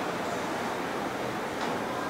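Steady hiss of room tone, with no speech; a faint brief sound about one and a half seconds in.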